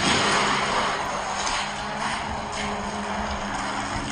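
Die-cast Hot Wheels Mario Kart toy carts rolling down a gravity race track toward the finish, a steady rushing noise of their small wheels on the track.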